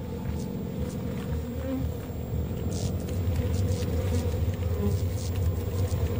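Low, steady rumbling drone with a buzzing edge, growing a little louder about halfway through, with a few faint ticks over it: an ominous horror-film sound-design drone.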